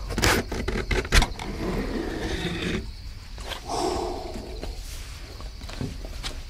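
Cardboard pizza box being opened: a couple of sharp snaps of cardboard in the first second or so, then the lid and flaps rasping and rubbing as the box is folded open.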